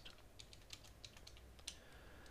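Faint computer keyboard typing: a quick run of about ten keystrokes as a short word is typed in.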